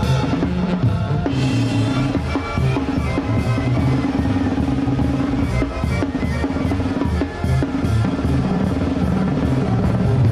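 Live Mexican banda music, the drum kit to the fore with rapid snare and tom strokes, cymbals and kick drum, over a tuba bass line and brass.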